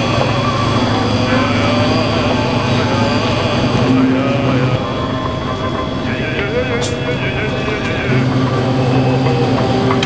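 Steady low electrical hum of refrigerated drink coolers, with faint voices in the background; the hum drops away for about three seconds in the middle.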